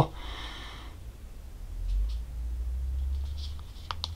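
Quiet handling of a smartphone in the hand, with a low rumble from it being moved close to the microphone. A single sharp click comes near the end, the iPhone's side button switching the screen off.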